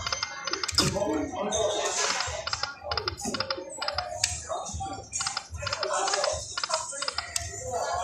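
Poker machine sound effects as the reels spin and stop: rapid runs of electronic clicks and chimes, over a background of voices.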